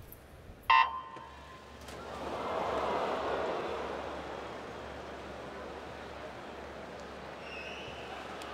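A single short electronic starting beep, then crowd cheering that swells to a peak about three seconds in and holds steady.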